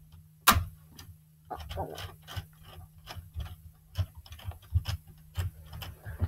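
Plastic Lego Technic gears clicking as a knob is twisted by hand to work a lifting mechanism on the model, a string of irregular ticks with one sharper click about half a second in.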